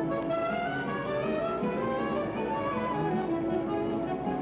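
Orchestral cartoon score, strings to the fore, playing a busy passage of quick moving notes.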